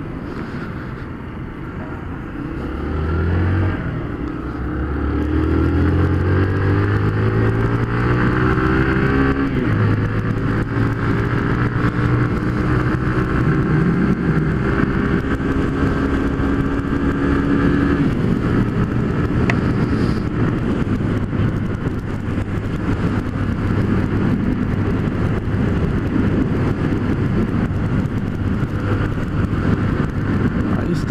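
Honda CG 150 Fan's single-cylinder four-stroke engine pulling away, its pitch climbing over the first ten seconds with a drop partway at a gear change, then running steadily at cruising speed, heard from on board the motorcycle.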